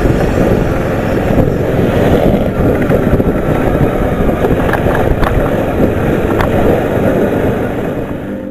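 Motorcycle running along a gravel track, heard from its handlebar-mounted camera as a steady mix of engine and wind noise, with a few sharp clicks around the middle.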